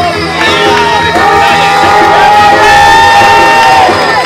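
Crowd cheering over background music, with one long drawn-out shout held for nearly three seconds from about a second in.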